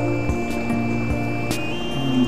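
Background music: sustained chords that change about one and a half seconds in, over a soft regular beat.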